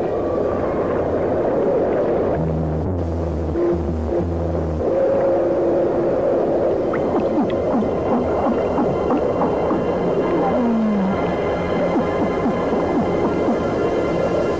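Underwater coral reef sounds: a dense stream of clicks and pops with fish calls over it. A run of low pulsed calls comes a few seconds in, and a short falling tone near the end.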